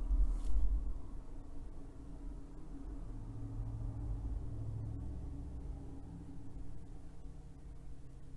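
Low, steady background hum of a quiet room, with a brief louder sound in the first second and no distinct events after it.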